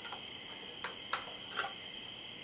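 Three light clicks from hands handling a wooden hurdy-gurdy, over a faint steady high whine.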